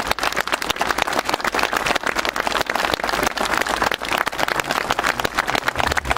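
Crowd applauding: many hands clapping in a dense, steady patter after a speech ends.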